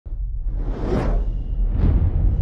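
Logo-intro whoosh sound effects: a long swelling whoosh that peaks about a second in, then a shorter one just before the logo lands, over a deep steady rumble.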